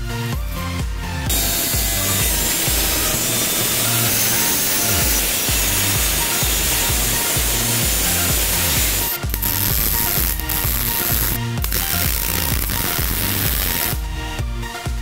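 Angle grinder with a cutting disc cutting through galvanized sheet steel: a loud, continuous grinding from about a second in to about nine seconds, then shorter cuts broken by brief pauses. Background electronic dance music with a steady beat plays throughout.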